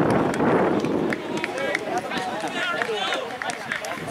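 Several distant voices shouting and calling out across an open rugby pitch, with a brief rush of noise in the first second.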